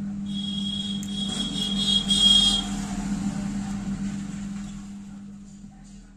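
A steady low motor hum that fades away over the last second or two, with a shrill high squeal from about half a second in until about two and a half seconds in.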